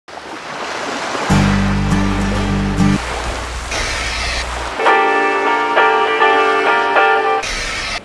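Channel intro music with whooshing swells: a rising whoosh at the start, a deep held chord, then bright synth chords in the second half.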